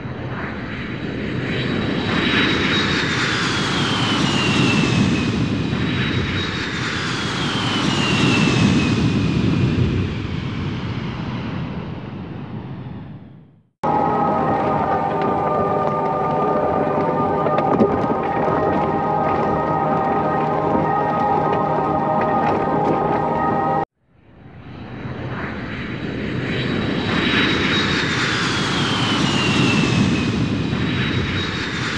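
Added soundtrack rather than live sound: swelling whooshes with a falling whistle, heard twice like a jet passing, then a sharp cut to about ten seconds of a steady held chord, and another sharp cut back to the whooshing, which fades in.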